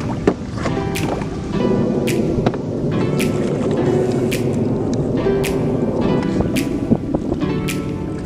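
Background music with a steady beat, a sharp hit about once a second over held chords.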